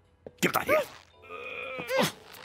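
Wordless cartoon-character vocal sounds: a groan-like utterance with sliding pitch in the first half, then a higher, drawn-out whine near the end.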